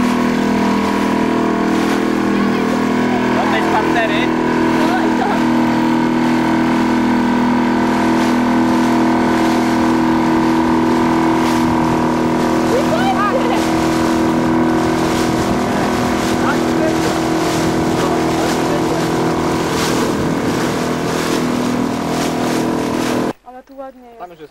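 Outboard motor of a small open boat running steadily at cruising speed, with water and wind rushing past. The motor sound cuts off abruptly near the end.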